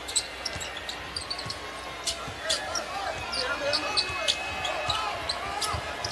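A basketball bouncing on a hardwood court in irregular sharp strikes as it is dribbled and played, over the background voices of an arena crowd.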